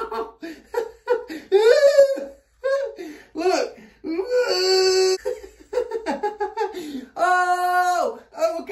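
A man laughing hard and crying out in pain in short choppy bursts, with two long drawn-out cries, one a little past four seconds and one near the end. He is reacting to electric shocks from a nerve stimulator turned all the way up on his biceps.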